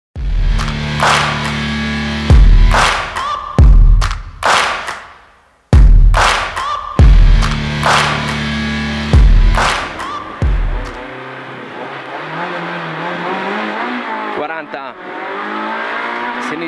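Intro music with heavy bass hits for roughly the first eleven seconds. Then the onboard sound of a Peugeot 106 N2 rally car's engine comes in, rising in pitch as the car pulls away, with a brief break near the end.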